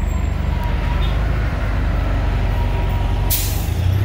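Street traffic with a truck's engine running low and steady, then a short, sharp hiss near the end.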